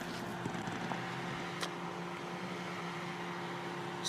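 A steady machine hum with a few even tones, and a single faint click about one and a half seconds in.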